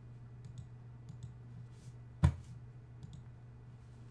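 A single sharp computer mouse click about two seconds in, with a few faint ticks around it, over a low steady hum.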